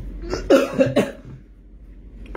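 A man coughing, several short loud bursts in quick succession within the first second.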